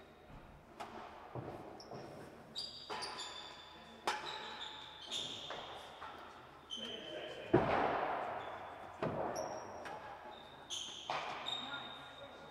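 A real tennis rally: irregular hard knocks of the solid ball off rackets, walls and the floor, echoing around the enclosed court, with short high squeaks between the hits. The loudest knock comes a little past halfway.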